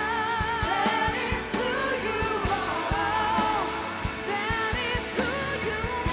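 Live contemporary worship band: women's voices singing with wavering, drawn-out notes over drums, electric guitar and keyboard, with a steady drum beat.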